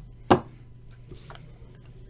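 A clear plastic trading-card case snapping open: one sharp click about a third of a second in, then a fainter click about a second later.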